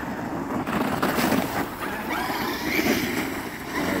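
Traxxas X-Maxx 8S radio-controlled monster truck driving, its electric motor giving a wavering whine over a steady noisy hiss.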